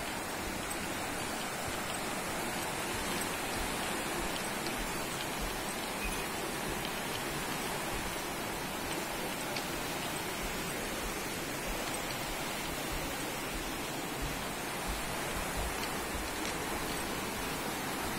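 Steady, even rushing of water, unbroken and at one level throughout.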